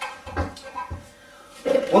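A few short clunks and knocks as the lid is handled and seated on the stainless-steel air still, followed by a man starting to speak near the end.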